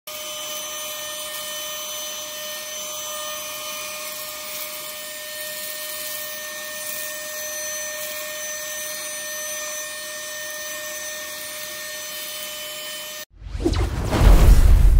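Handheld cordless mini vacuum (a 3-in-1 electric air duster in vacuum mode) running at a steady pitch with a thin motor whine as its nozzle sucks up loose rice grains. Near the end it cuts off suddenly and a deep booming whoosh from a logo intro takes over.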